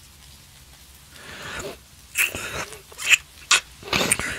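Close-miked mouth sounds from a man in an ASMR recording: a soft breath about a second in, then three short, wet kisses in the second half.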